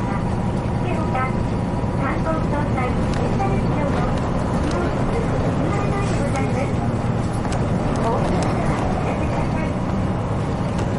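A 1996 Hino Blue Ribbon KC-RU1JJCA route bus driving, heard from inside the cabin: a steady low engine and running drone, with short, scattered higher-pitched sounds over it.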